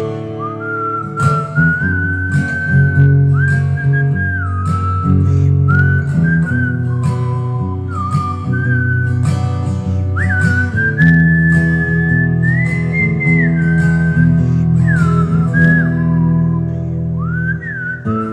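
A man whistling a melody over strummed chords on a Takamine acoustic guitar; the whistle slides up into several of its notes.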